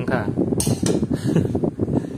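Steel spoon clinking and scraping against a metal kadai and a steel plate as curry is served onto rice, several sharp clinks in quick succession.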